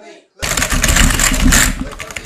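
A sudden, very loud, harsh burst of noise with a rapid rattling texture, starting about half a second in and lasting about a second and a half, clipped and distorted like a blown-out meme sound effect.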